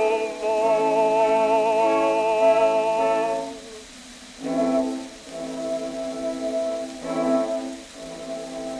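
Early acoustic 78 rpm gramophone recording of a song with small orchestra: a held, wavering note ends about three and a half seconds in, then the accompaniment plays short brass-led chords in three groups.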